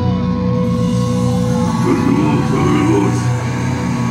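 Death metal band playing live through the PA: distorted guitars and bass holding a ringing chord, with a shouted vocal coming in about two seconds in.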